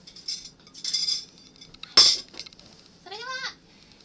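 Light clinks of tableware, with one sharp click about halfway, then a brief high vocal sound from a woman, rising then falling, near the end.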